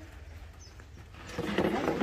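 A bird calling in a short, loud burst about one and a half seconds in, over a low steady background hum.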